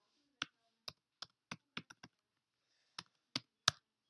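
Computer keyboard keystrokes: a quick run of about seven taps in the first two seconds, a short pause, then three more taps near the end.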